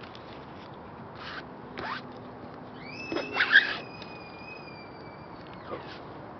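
Short rasping scrapes of a screen-printing squeegee or frame dragged over paper, two brief strokes followed about three seconds in by the loudest one. A thin, high whistle-like tone slides slowly downward for a couple of seconds alongside.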